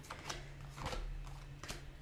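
Tarot cards being handled and laid down on a wooden tabletop: a few short, soft card snaps and taps, the sharpest one near the end.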